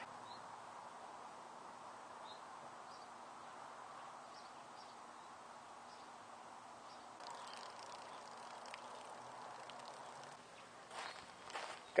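Faint steady hiss with a few brief, faint high chirps scattered through it, and a couple of soft clicks near the end.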